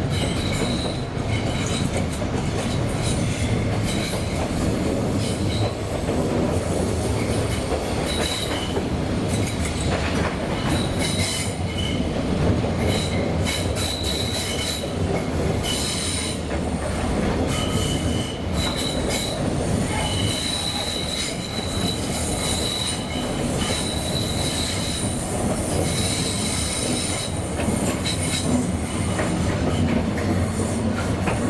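A British Rail Class 317 electric multiple unit heard from inside the carriage, running over curving track with a steady rumble of wheels on rails. Short, high-pitched wheel squeals come and go throughout as the wheels grind through the curves.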